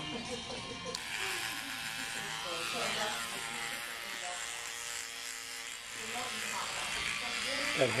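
Corded electric hair clippers buzzing steadily as they shave a head down to the scalp, louder from about a second in.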